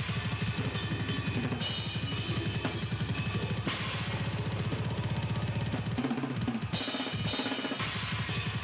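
Metal drum kit played at high speed: a rapid, steady stream of double bass drum strokes under snare and cymbals. The kick pattern breaks briefly near the end.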